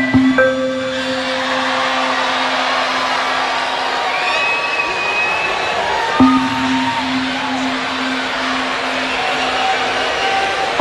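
Electronic dance music played live on synthesizers and keyboards: a long held low synth note over a dense wash of sound, with a sharp hit about six seconds in before the note carries on.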